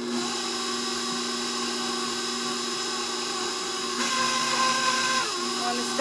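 KitchenAid stand mixer motor switching on and running steadily, its flat beater working flour into cookie dough in a steel bowl. The hum gets a little louder about four seconds in, and its whine dips slightly in pitch near the end.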